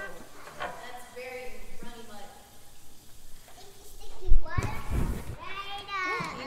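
Young children's high voices chattering and calling out as they play, with a loud low thump a little over four seconds in.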